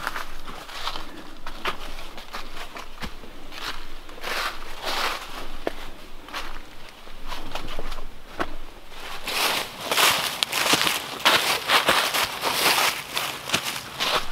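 Footsteps through deep, dry fallen leaves, an irregular run of rustling crunches that grows louder and busier in the last few seconds.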